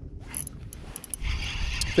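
Spinning reel being cranked to take up line on a freshly hooked crappie: a few light clicks, then from about a second in a steady whir of the reel's gears that grows louder.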